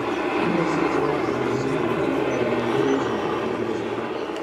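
UH-60 Black Hawk helicopter flying overhead, its rotor and turbine running with a steady noise, while people talk nearby.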